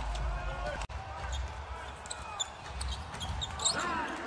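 Basketball game sounds on a hardwood court: a ball bouncing and short high squeaks of players' sneakers, over faint voices.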